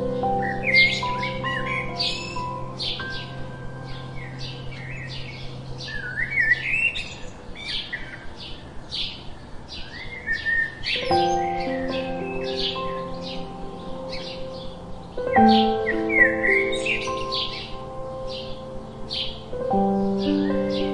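House sparrows chirping busily, many short chirps with a few sliding calls, over soft background music of slow held chords that change about halfway through, again a few seconds later, and near the end.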